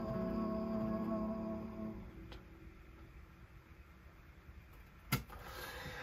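The last chord of a song on acoustic guitar rings on and fades away over about two seconds. After that the room is quiet, with one sharp knock near the end.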